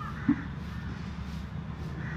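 A single short bird call, like a crow's caw, about a third of a second in, over a steady low background rumble.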